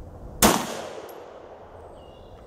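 A single pistol shot about half a second in, its report trailing off over about a second.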